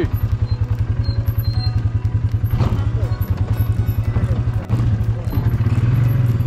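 ATV engine running at low, steady revs with a fast, even throb as the quad crawls over a rocky trail.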